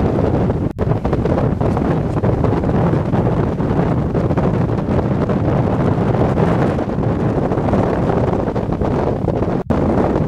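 Strong wind buffeting the camera's microphone: a loud, steady rumble that briefly drops out twice, once just after the start and once near the end.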